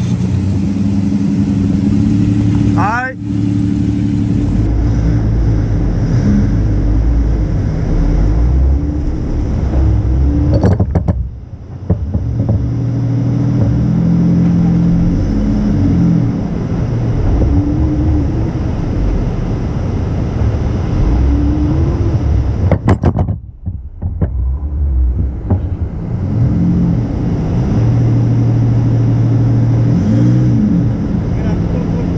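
Jeep engine running under load, pulling a stuck pickup out of soft beach sand on a kinetic rope. The engine note rises and falls as the throttle changes, with two brief dips in level.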